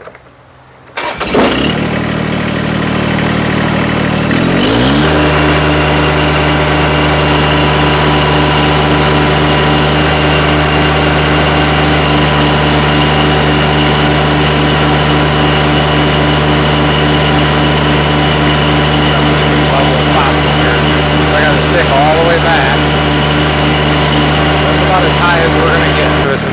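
Kubota BX2380's small three-cylinder diesel engine starts about a second in, revs up over the next few seconds, and then runs steady at full throttle to give the loader hydraulics the most flow while it lifts the pallet-fork load.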